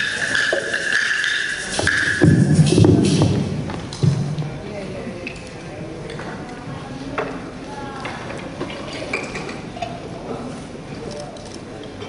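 A steady high ringing tone that stops about two seconds in, then voices and scattered light knocks and taps as hand drums are handled on a stage, with no drumming rhythm yet.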